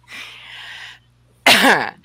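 A woman clearing her throat: a breathy rasp for about a second, then a short, louder cough-like sound about a second and a half in.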